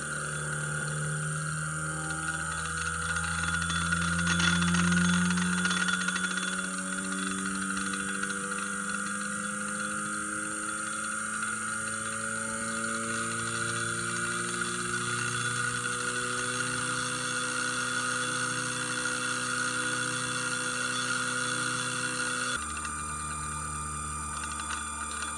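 ES-M22430 size 24 closed-loop stepper motor with a brass pulley, running on a KStep drive and ramping slowly from 75 to 125 full steps per second with encoder-feedback active damping on; its whine of several tones rises gradually in pitch. It swells briefly about five seconds in, and near the end the rising tones cut off, leaving a steady hum.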